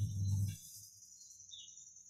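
A man's low, closed-mouth hum lasting about a second, fading out half a second in. After it there is only a faint, steady high tone with a couple of small chirps.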